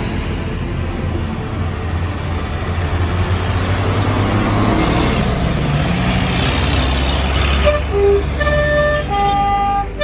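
Farm tractors driving past one after another, their diesel engines running with a steady low drone. About eight seconds in, a short tune of clear held notes at changing pitches starts over the engine sound.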